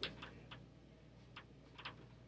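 Faint ticks of a dry-erase marker tapping and stroking on a whiteboard, a handful of light, irregular clicks.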